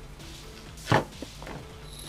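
A single hard knock about a second in, followed by a light click: pliers and a metal-beaded begleri set being handled on a tabletop as a chain link is bent closed.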